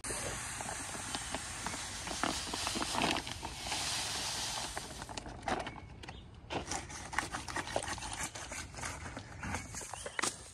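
Pool filter sand pouring from a bag into a sand filter tank: a steady hiss for about the first five seconds, then a patchier run of crackles and rustles as the flow breaks up and the bag is emptied.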